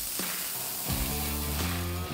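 CNC plasma torch cutting steel plate: a steady, even hiss. Background music comes in underneath about a second in.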